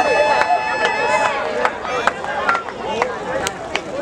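Crowd of voices chattering around the stage, broken by scattered sharp clicks. A steady high-pitched tone is held through about the first second, then stops.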